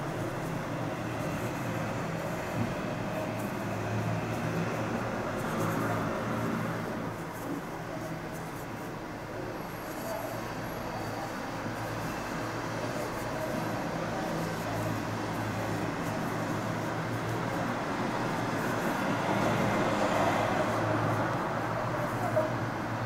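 Steady background rumble and hiss with a faint low hum, even throughout and a little louder near the end.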